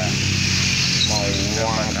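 A steady engine hum with a hiss over it, loudest in the first second and a half, under a brief spoken word near the end.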